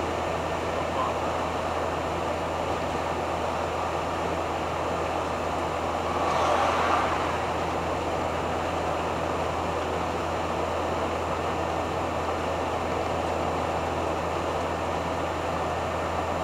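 Steady engine drone and road noise inside the cab of a 1985 Hobby 600 camper on a Fiat Ducato base, cruising at about 75 km/h. There is a brief swell in the noise about six seconds in.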